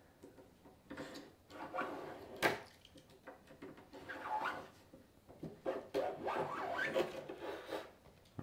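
A hand scoring tool scraping along a plexiglass (acrylic) sheet against a clamped steel straightedge, in several separate strokes with a sharp click about two and a half seconds in. Repeated scoring cuts a line into the plastic, raising little pieces of plastic, so that the sheet can be snapped along it.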